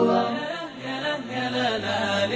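Chanted vocal music from a programme jingle: a wordless sung melody with wavering notes over a low held tone, dropping in level about half a second in.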